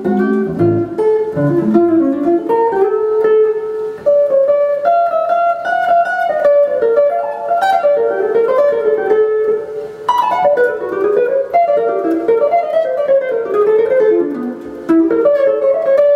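Raines Tele7 seven-string electric guitar playing fast, unbroken single-note jazz runs that wind up and down.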